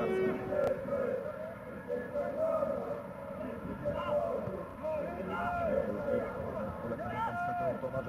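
Scattered voices calling and shouting across a football pitch, faint and short, over a low hum of outdoor ground ambience.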